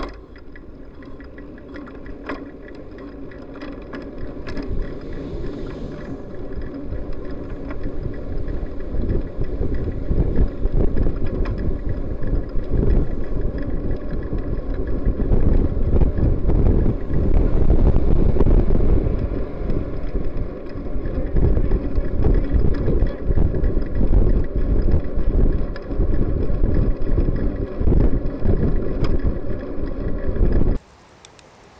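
Wind buffeting the microphone of a handlebar-mounted camera on a moving bicycle: a low, gusty rushing that grows louder over the first ten seconds or so as the bike gathers speed, then stays loud and uneven.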